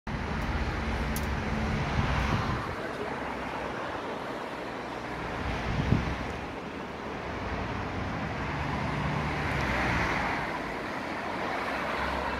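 Road traffic ambience: a steady rumble of vehicles that swells as cars pass, about two seconds in and again near ten seconds, with one short knock around six seconds.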